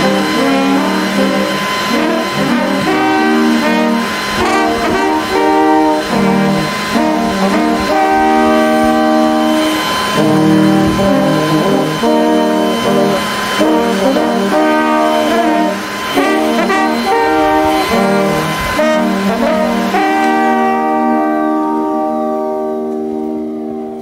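Bavarian brass band music: several brass instruments play a short tune that ends on a held chord, which fades away near the end. A steady high whine runs under the first half, the leaf blower used in the sketch.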